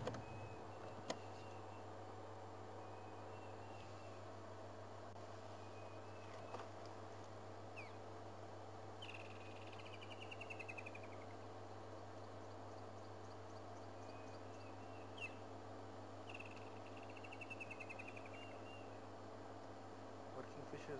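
Bird calls: short chirps here and there, and twice a descending rattling trill lasting about a second and a half, over a faint steady low hum.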